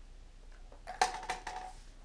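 A plastic lottery ball dropped down a clear tube, landing with a sharp clack on the ball below and bouncing with two or three lighter clicks. The first hit rings briefly.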